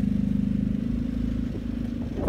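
A generator's small engine running steadily at constant speed: a low drone with a fast, even pulse that eases a little in the second half.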